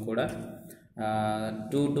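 A man's lecturing voice trails off into a brief pause, then holds one long, steady vowel for most of a second before speaking again.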